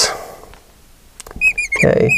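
Marker tip squeaking on a glass lightboard as a formula is written: a quick run of short, high chirps starting a little past halfway.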